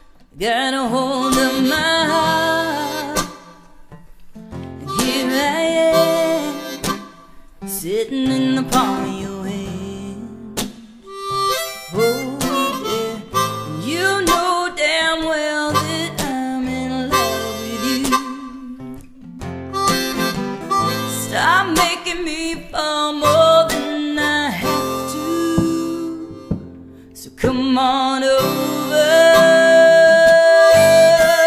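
Harmonica solo over strummed acoustic guitar in a live acoustic band. It plays in phrases with short breaks between them, and some notes bend up in pitch.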